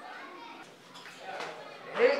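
Faint background voices and chatter, with children's voices among them.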